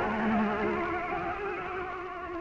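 Lo-fi dungeon synth music: a sustained synthesizer chord whose notes waver steadily in pitch, with a brief low note in the first second, slowly fading out.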